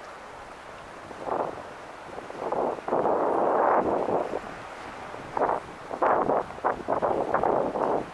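Wind buffeting the camera's microphone in irregular gusts, starting about a second in, loudest in the middle and again near the end, then cutting off sharply.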